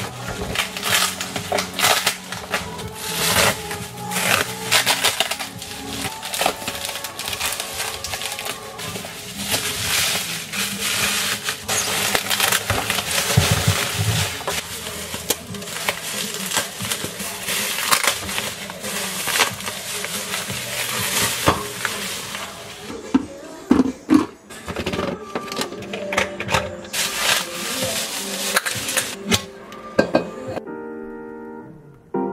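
Bubble wrap crinkling and rustling as wrapped kitchen items are handled and unwrapped, with a few louder knocks of things set on a stone countertop after about 23 seconds, over background music.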